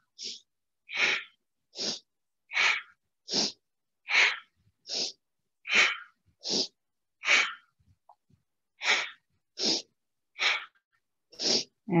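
A woman's forceful, audible breaths through the nose, short sharp inhales and exhales in a steady rhythm a little faster than one a second, paced by side-to-side seated spinal twists.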